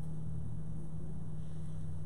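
A steady low hum over an even background rumble: room tone.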